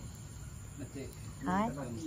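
A voice calls out a short word about a second and a half in, over a steady high insect drone, likely crickets, that runs underneath.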